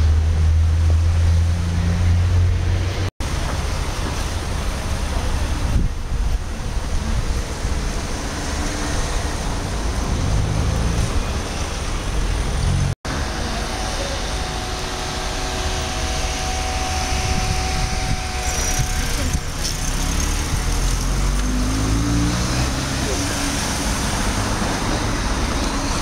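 City street traffic: car engines running and passing over a steady low rumble, with faint voices in the background. The sound cuts out for an instant twice.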